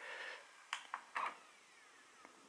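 Quiet room with a brief soft hiss, then two faint clicks about half a second apart.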